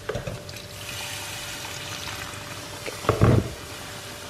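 Water poured from a glass kettle into a steel pan of frying spiced mango pieces, splashing and sizzling steadily. One short knock about three seconds in, the loudest sound.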